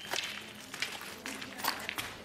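Footsteps crunching over scattered leaves and rubble: about five short, sharp steps at an uneven pace.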